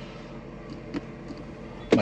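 Steady low rumble and hiss of background noise, with a few faint ticks and a sharp knock just before the end.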